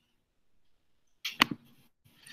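Computer mouse clicked: a sharp double click, button pressed and released, about one and a half seconds in, followed by a faint brief rustle.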